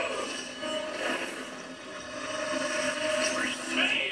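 Animated-film soundtrack playing from a television's speaker: sound effects and score, with one held tone running through most of it.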